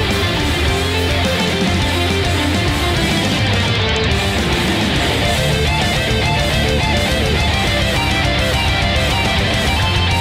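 Background rock music with electric guitar and a steady beat.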